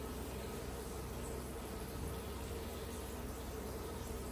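A steady buzzing hum, even in level throughout, like a small machine or electrical appliance running.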